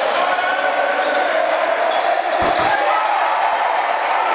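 Live game sound in a basketball gym: crowd voices and shouts throughout, with the ball bouncing on the hardwood court. There is a low thud about two and a half seconds in.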